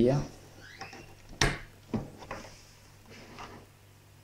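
Plastic wiring-harness connector being pushed into the socket on the back of a double-DIN car stereo: one sharp click about a second and a half in, then a few fainter knocks and handling rustles.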